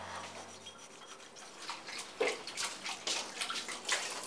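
Dishes washed by hand at a sink: a sponge scrubbing a ceramic bowl under a running tap, with water splashing and a few short knocks of crockery.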